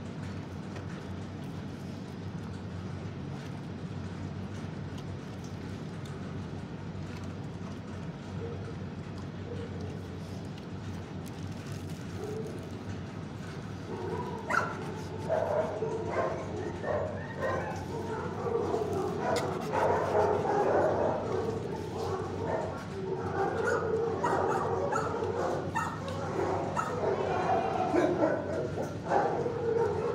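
A steady low hum, then from about halfway a dog or dogs yipping, whining and barking in a kennel room, growing louder toward the end.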